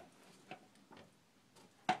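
Quiet room tone in a closed bedroom, with no street traffic coming through the windows, broken by a few short faint clicks.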